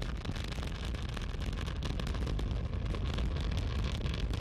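Space Shuttle Columbia's twin solid rocket boosters and three main engines in full-thrust ascent: a steady deep rumble with constant crackling.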